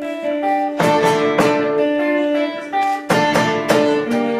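Two acoustic guitars opening a piece of Argentine folk music, with ringing picked notes punctuated by a few sharp strummed chords.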